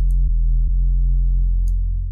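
Deep synth bass line of a trap beat playing long low notes, changing note a few times, with two faint high ticks over it.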